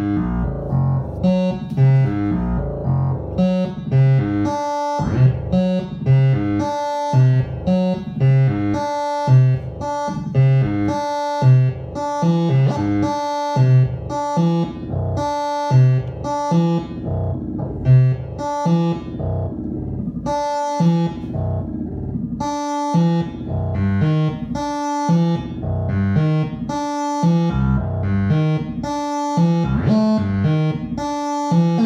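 Eurorack modular synthesizer with a wavetable oscillator voice (Mutable Instruments Braids in wavetable mode), stepped by a Baby-8 eight-step sequencer: a quick repeating loop of short pitched notes with a low note on each step. The loop's pitches shift as the sequencer's step knobs are turned.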